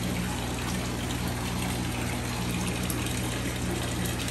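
Water from a fish tank's filter return splashing steadily into the tank, with the steady low hum of a running pump.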